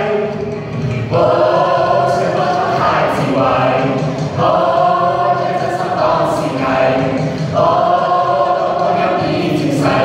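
Mixed choir of boys and girls singing, in phrases of held notes, each broken by a short breath pause about every three seconds.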